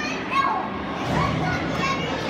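Children's voices calling out over indistinct chatter in an ice rink.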